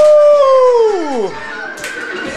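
A single long howling whoop from a voice. It swoops up, holds for about half a second, then falls away and dies out just over a second in. The music is mostly gone beneath it.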